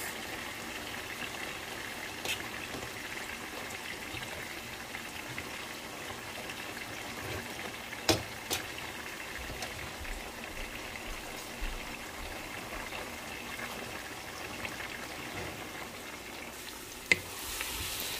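Noodles boiling in water in a large stainless-steel pot as they are stirred apart, giving a steady bubbling hiss. A few sharp clicks of the stirring utensil against the pot break through it. Near the end a brighter hiss rises.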